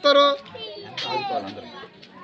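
Raised human voices in two short phrases, one at the start and one about a second in, with sliding pitch.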